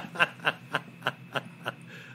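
A man chuckling in a run of short breathy laughs, about four a second.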